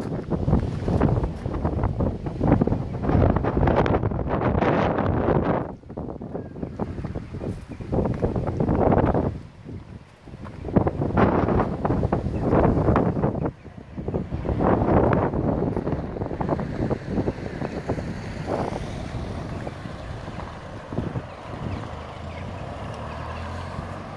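Wind buffeting a phone microphone in irregular gusts, loudest in the low end, easing to a softer rush in the last few seconds.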